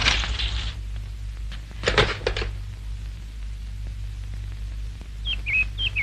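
A telephone handset lifted from a rotary phone's cradle, a short clatter about two seconds in, over a steady low hum on the film soundtrack.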